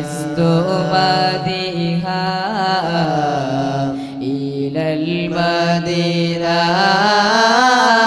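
Islamic devotional chanting in Arabic, a drawn-out melodic line with long held notes that waver and bend in pitch.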